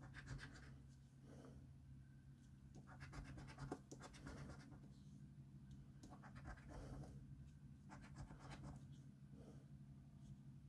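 A coin scraping the scratch-off coating of a paper scratchcard, faint, in several short spells of quick back-and-forth strokes with pauses between.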